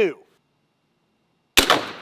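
A Greener harpoon gun fires once, its .38 Special blank going off with a single sharp, loud report about one and a half seconds in that dies away quickly as it launches a one-pound harpoon.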